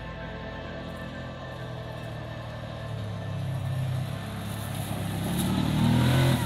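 Kawasaki Teryx 800 side-by-side's V-twin engine running as it drives up a dirt trail toward the camera, growing steadily louder over the last few seconds. Background music fades out near the start.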